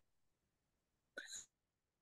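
Near silence on a call, broken a little over a second in by one brief, soft vocal sound, a clipped syllable or hiccup-like catch of breath.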